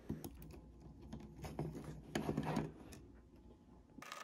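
Faint small clicks and scratching from fingers handling plastic jumper connectors and wires inside an opened mouse shell, as the force-sensitive resistor's lead is plugged onto a jumper wire.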